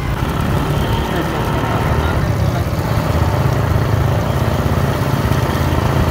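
Motorcycle engine running at a steady speed while riding, a low even hum over a rushing haze of wind and road noise.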